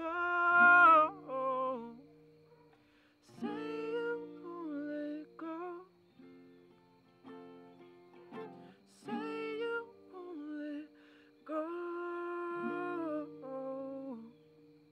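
Steel-string acoustic guitar chords ringing under a man singing long held notes, in several phrases with pauses between.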